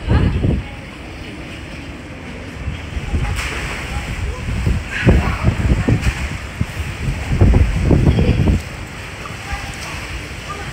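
Wind buffeting the phone's microphone in gusts, strongest near the end, over pool water sloshing and lapping.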